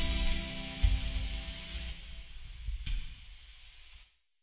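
Acoustic guitar's last chord ringing out and fading, over a steady hiss, with a faint click about three seconds in.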